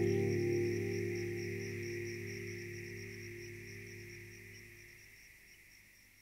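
The song's final sustained acoustic guitar chord ringing out and fading steadily away, its low notes dying out about five seconds in.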